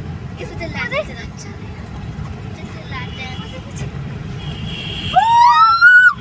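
Steady low road and engine rumble inside a moving car's cabin. Near the end comes a loud, shrill wail that rises in pitch in two overlapping sweeps.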